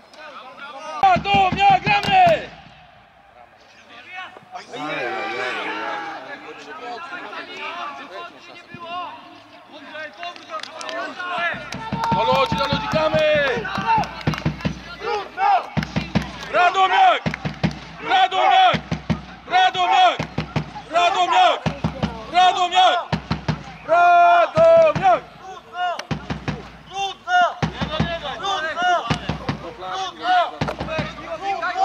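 Voices shouting across a football pitch during play: loud calls, then from about halfway through a run of short shouts roughly one a second.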